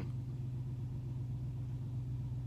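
Car engine idling with a steady low hum, heard from inside the cabin.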